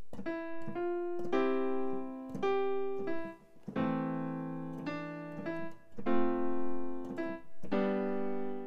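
Digital piano playing a slow hymn melody with held chords set underneath it, a new note or chord every second or so, with a short break about three and a half seconds in.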